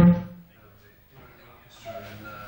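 A voice: a short, drawn-out spoken word right at the start, then low studio room tone, then speech starting again near the end.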